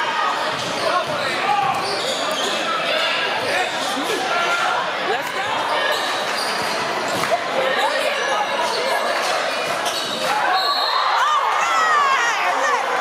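Live basketball game sound in a reverberant gym: a ball bouncing on the hardwood, short high sneaker squeaks, and the voices of players and crowd. The voices grow louder near the end.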